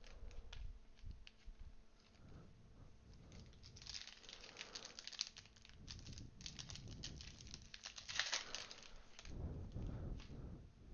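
A trading-card pack wrapper being torn open and crinkled, with cards being handled. The crinkling builds about halfway through and is loudest near the end.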